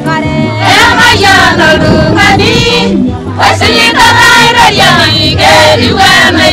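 A group of women's voices singing a song together over steady low backing notes, with a brief lull a little after three seconds in.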